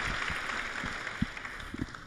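Audience applause dying away.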